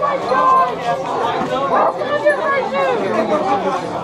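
Several people talking and exclaiming at once, overlapping voices of a small group, with an "oh my god!" near the end.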